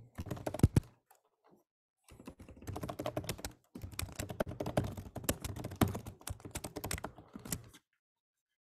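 Typing on a computer keyboard: a short burst of keystrokes, a pause of about a second, then a long steady run of rapid keystrokes.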